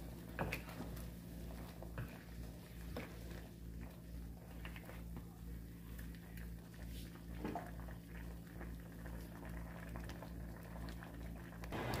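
Faint bubbling of a pot of peanuts in the shell cooking in water, with scattered small clicks from the shells and the stirring utensil against the pot.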